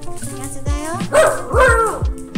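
Miniature schnauzer barking a few times in quick succession about a second in, excited by a treat held over it. Background music with a steady beat plays throughout.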